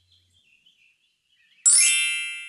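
A bright chime sound effect rings out near the end, a cluster of high ringing tones that starts suddenly and slowly fades, signalling the correct answer being picked.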